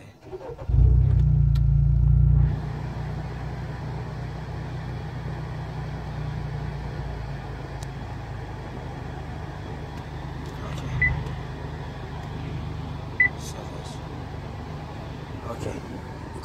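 A 2018 Honda Accord's engine starting about a second in, running loud for a couple of seconds, then settling to a steady idle. Later, two short high beeps about two seconds apart.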